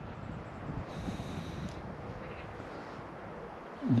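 Quiet outdoor background with a steady low hiss. A brief high-pitched sound comes about a second in and lasts under a second.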